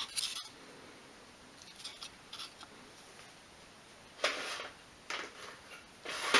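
A few brief, faint scrapes and rubs as fingers handle small pieces of wood on a cutting mat, the longest about four seconds in.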